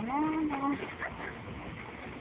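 A single drawn-out vocal call from a person, held near one pitch for under a second at the start, amid faint background chatter.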